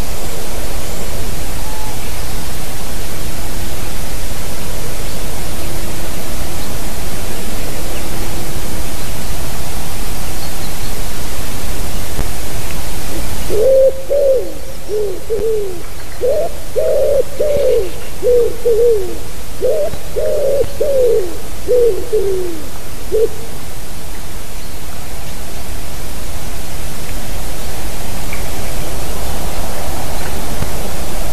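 Common wood pigeon singing: a run of low, soft coos in short repeated phrases for about ten seconds, starting a little under halfway through, over a steady loud hiss.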